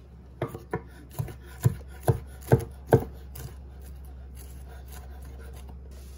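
Chef's knife chopping cooked chicken on a wooden cutting board: about eight sharp knocks, roughly two a second, getting louder, stopping about three seconds in.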